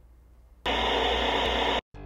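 A loud, steady burst of static-like hiss, about a second long, starting just over half a second in and cutting off abruptly.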